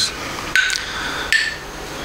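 Metronome app ticking steadily: a short, high click with a brief ringing tone about every 0.8 seconds, heard twice.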